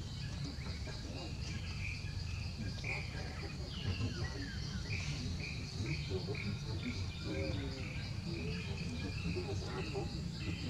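Outdoor ambience: a steady high insect drone with short bird chirps repeating throughout, over a low rumble.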